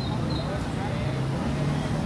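A motor vehicle engine running steadily with a low hum, amid street traffic noise and faint voices.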